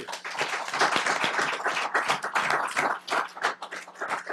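Audience applauding, many hands clapping together at once.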